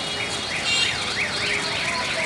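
A bird calling in a rapid series of swooping chirps, several a second, over the steady low rumble of a slowly approaching diesel locomotive.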